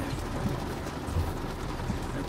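Steady rumble and hiss inside a moving car's cabin.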